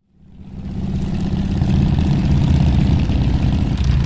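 An engine running steadily with a low, pulsing rumble, fading in over the first second and then holding.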